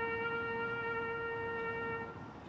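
A trumpet holding one long, steady note that starts to die away at the very end.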